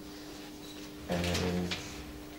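A man's voice in a pause of speech: a short, level-pitched hesitation sound about a second in, over a faint steady room hum.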